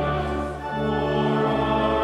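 A church hymn: voices singing over held accompanying chords that change every half second or so, with a brief dip in loudness about half a second in.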